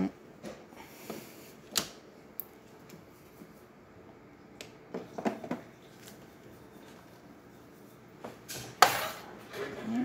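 Scattered clinks and knocks from handling an espresso machine's parts and a drinking glass, with one sharp clack a little before the end, the loudest sound.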